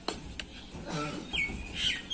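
A bird calls with a couple of falling notes in the second half. A couple of sharp knocks come before it, from fired clay bricks being handled.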